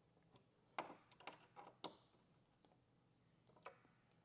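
Near silence broken by a few faint, sharp clicks from a hand driver and small M5 bolts as a steel mounting bracket is tightened down onto a door card.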